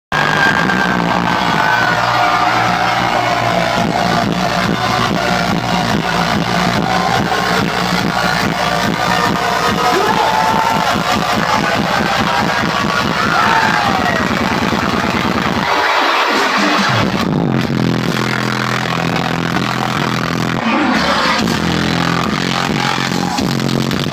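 Dubstep DJ set on a club sound system, recorded on a phone close to the stage: heavy bass music that overloads the phone's microphone, with crowd cheering over it. The bass drops out briefly about two-thirds of the way through, then the beat comes back.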